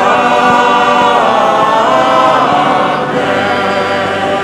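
Church choir singing slowly, the voices holding long notes and moving to new pitches every second or so.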